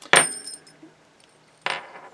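Small metal padlock keys on a string clinking together once, with a bright, high ringing that dies away within about half a second. A short, softer rustle follows near the end.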